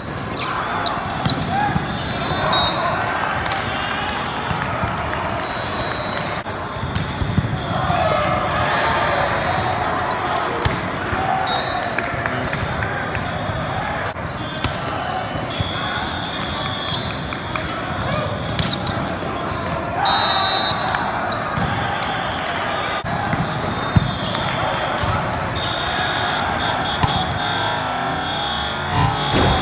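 Busy indoor volleyball hall: a steady din of players' and spectators' voices, with volleyballs being hit and bouncing as sharp knocks, the loudest near the start and about 24 seconds in.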